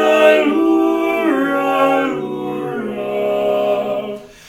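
Male barbershop quartet singing a cappella in close four-part harmony: long held chords whose lower voices step down in pitch, with no words clearly sung.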